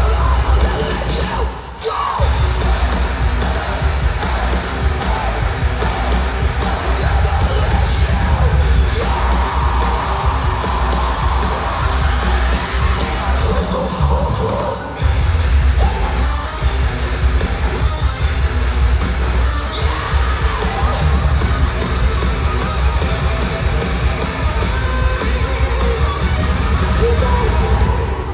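A heavy rock band playing live through an arena PA, heard from the crowd: pounding bass and drums, distorted guitars and yelled vocals. The band stops dead for a moment twice, about two seconds in and again about halfway through, before crashing back in.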